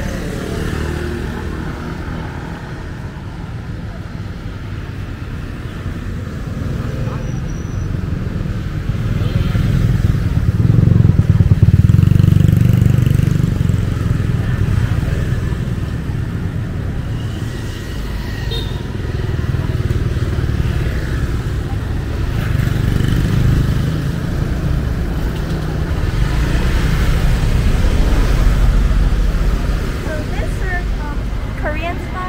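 Busy street sounds: motorcycles and other traffic passing close by, with people's voices. The traffic swells loudest about a third of the way in and again near the end.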